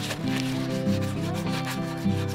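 A scrubber of wadded used aluminium foil stuffed in a plastic mesh produce bag rubbed hard against the inside of a cast-iron pot: a repeated scratchy scouring.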